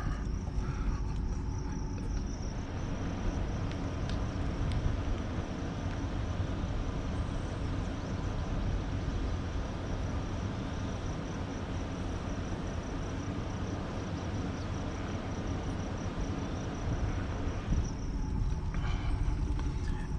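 Steady low rumble and hiss of a pickup truck rolling slowly in traffic, fuller while the microphone is held out the open window from about two seconds in until near the end. A thin, steady insect shrill runs underneath.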